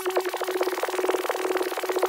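Electronic music intro: a held synthesizer tone under a rapid, evenly repeating stuttering buzz of about fifteen pulses a second.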